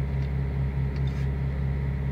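A steady, unchanging low hum with a faint hiss above it.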